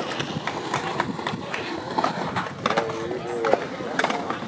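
Skatepark sounds: skateboard and scooter wheels rolling on concrete, with many sharp clacks and knocks of boards and decks scattered through.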